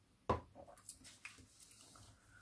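A single light knock on the tabletop, then faint rustling and scratching from handling a water brush and a paper towel while colouring.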